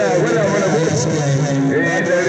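A voice singing or chanting in a long unbroken line, over a steady low drone.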